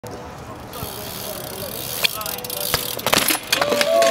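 BMX bike tyres rolling on concrete, growing louder as the rider comes in, then a bail: a cluster of knocks and clatters as bike and rider hit the ground about three seconds in. A voice cries out near the end.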